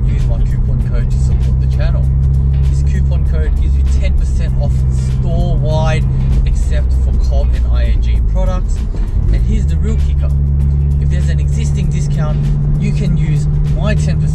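Subaru WRX's turbocharged flat-four engine droning steadily inside the cabin on the move; about eight and a half seconds in its pitch drops, then climbs back up a second later.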